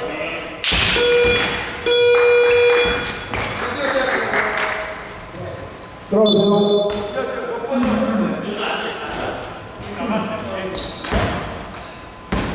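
An electronic buzzer in a gymnasium sounds for about a second, two seconds in, as one steady pitched tone. Voices follow, and a basketball bounces on the wooden floor near the end.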